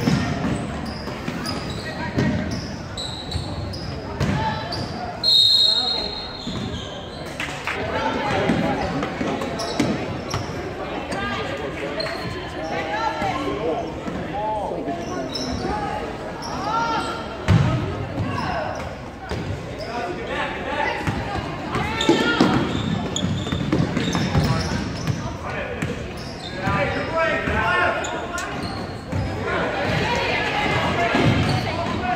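A basketball bouncing on a hardwood gym floor during play, under indistinct chatter from spectators and players that echoes through the large hall. A brief high-pitched squeal about five seconds in.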